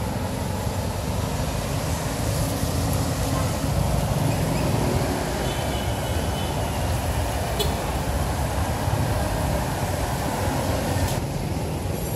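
Steady street traffic noise: a low rumble of passing vehicles.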